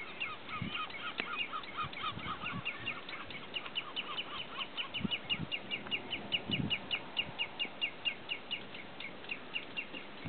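Common redshanks calling in a rapid run of short, sharp notes, about five a second, with a second, lower-pitched series alongside them for the first three seconds. A few low thumps sound underneath.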